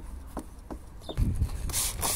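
A plastic squeegee rubbing along wet paint protection film in short repeated strokes, followed about a second in by louder rumbling and rushing noise as a jug of slip water is handled.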